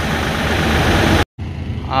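A steady mechanical running noise with a low rumble, like an engine idling, which cuts off abruptly about a second in. After a brief gap of silence, quieter roadside background noise follows, with a man's voice saying "haan" at the very end.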